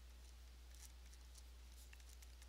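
Faint scratching of a pen on paper as a formula is handwritten, a few short strokes over a low steady hum.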